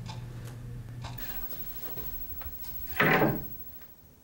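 A low steady hum that cuts off about a second in, a few faint scattered clicks, then one loud knock about three seconds in.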